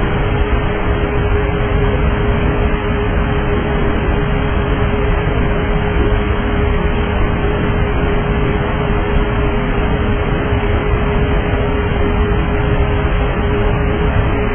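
Steady in-flight noise picked up by a Douglas DC-9's cockpit voice recorder: an even rush of engine and airflow noise with a constant hum near 400 Hz, typical of the aircraft's electrical power.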